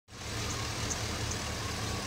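A 2006 Chevrolet Silverado 3500's 6.0-litre Vortec V8 idling steadily, heard from above the open engine bay.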